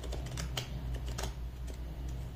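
Tarot cards being handled: a few light, irregular clicks as the cards and deck are fingered, over a steady low hum.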